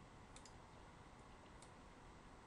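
Near silence: faint steady hiss with a few soft computer-mouse clicks, four in all, two close together early and two spaced out later.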